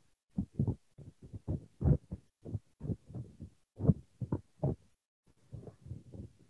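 Muffled, irregular thumps and rubbing, several a second, from a phone being handled close to its microphone, heard through a video call.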